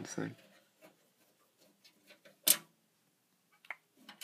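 Handling noise from a hand working at a computer case: mostly quiet, with one sharp click about two and a half seconds in and a fainter click near the end.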